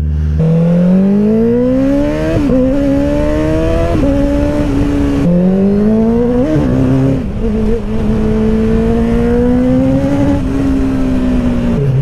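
Honda CBR650R's inline-four engine pulling away from idle. The revs rise steeply with brief dips at gear changes, hold steady while cruising, then drop back near the end.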